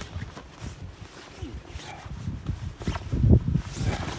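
Rustling and flapping of a military surplus poncho's fabric as a person wriggles out from under it, with irregular low thuds, the loudest a little after three seconds in.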